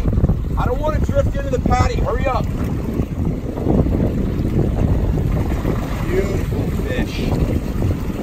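Wind buffeting the microphone in a steady low rumble over open water, with brief indistinct voices in the first couple of seconds.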